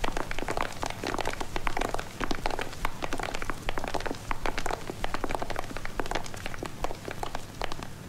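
Many overlapping footsteps of a group of people walking on a hard, polished floor: a dense, irregular patter of clicks and taps.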